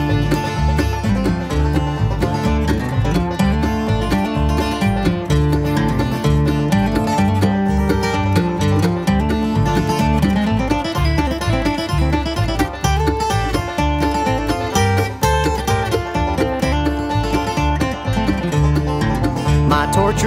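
Bluegrass instrumental break with no singing: banjo and acoustic guitar picking over an upright bass line.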